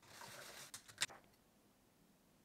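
Stirring and scraping in a small plastic cup of liquid glaze, then three sharp clicks against the cup, the last and loudest about a second in.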